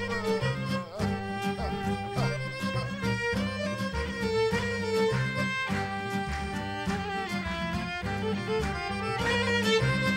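Instrumental break in a Macedonian folk song: a violin plays the melody over accordion, guitar and double bass accompaniment, with a steady bass pulse beneath.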